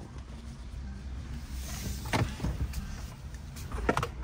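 Low, steady cabin rumble of a Ford F-150 Lightning electric pickup moving off slowly, with a single click about two seconds in.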